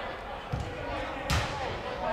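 Football being kicked: two thuds about a second apart, the second louder and sharper, under the distant shouts of players in a large indoor hall.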